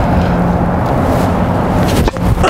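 A tennis serve struck near the end: one short crack of a racket hitting the ball, over a steady loud rushing background noise with a low hum.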